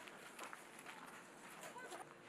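Faint, distant voices with a few soft clicks and knocks.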